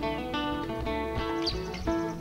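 Background music: acoustic guitar playing plucked notes.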